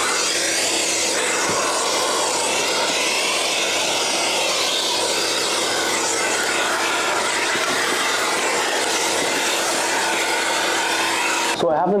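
Workshop vacuum cleaner running steadily with a floor-head attachment drawn over sawdust on wooden boards. It cuts off suddenly near the end.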